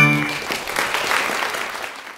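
A song's accompaniment ends on a short final chord, followed at once by a burst of applause that gradually fades.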